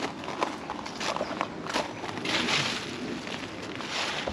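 Irregular soft rustling and crunching, like footsteps and brushing through leaves, with a louder rustle about two seconds in.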